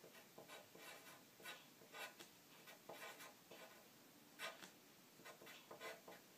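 Pencil writing on paper: faint, short scratching strokes in quick, irregular succession, with a brief pause a little past halfway.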